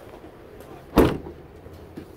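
Rear liftgate of a 2013 Chevrolet Tahoe slammed shut: one sharp slam about a second in.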